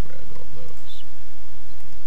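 A man's low wordless vocal murmur: a few short voiced sounds in the first second, over a steady low hum on the recording.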